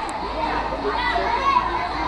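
A crowd of children chattering and calling out, many voices overlapping at once.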